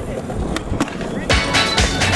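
Skateboard wheels rolling on concrete, with a couple of sharp clicks. About a second and a half in, hip-hop music with a heavy beat comes in loudly over it.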